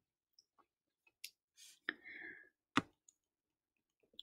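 Three faint, sharp clicks about a second apart, with a brief soft rustle after the second. They come from working the computer while the hand-drawn ink is erased from a slide.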